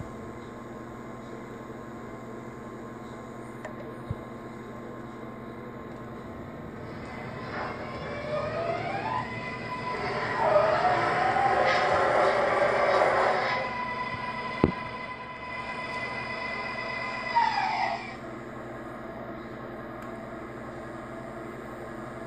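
MTH R-142A O-gauge model subway train running: a whine that rises in pitch as it speeds up about seven seconds in, holds steady, and falls away as it slows to a stop near eighteen seconds. The rumble of its wheels on the track is loudest as it passes close, about ten to thirteen seconds in.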